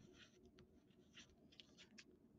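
Faint scratching of writing on paper: a few short, separate strokes as a number is written out by hand.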